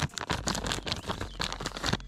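A thin plastic lure bag being pulled open by hand, crinkling and crackling in quick runs of small crinkles, with a louder crackle near the end.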